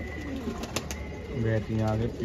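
Domestic pigeon cooing: a low, drawn-out coo starting about halfway through, with a single faint click shortly before it.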